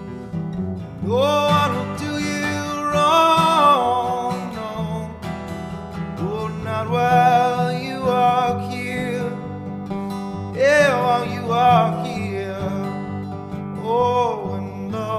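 Acoustic guitar playing an instrumental passage of a folk song: a steady low accompaniment under a melody line that slides up and down in pitch.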